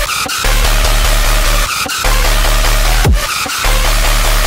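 Dubstep: a heavy, distorted synth bass over a deep sub-bass, cutting out briefly a couple of times, with a falling pitch sweep at the start and another about three seconds in.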